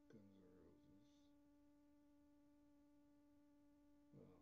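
Near silence with a steady faint hum, one low tone with overtones above it. A faint voice-like sound comes in the first second.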